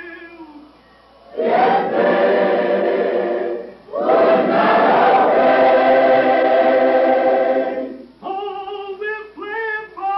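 Choir singing two long held chords, the second longer, framed by a single voice singing with vibrato at the start and again near the end.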